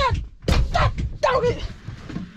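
A man's voice in short muttered sounds that the recogniser did not catch as words, with a low thump about half a second in.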